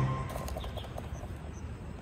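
The last note of the backing music dies away within the first half second. Then quiet outdoor background with a few faint, brief bird chirps.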